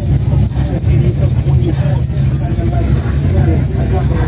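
Cars cruising slowly past with a steady low rumble, mixed with music and people talking.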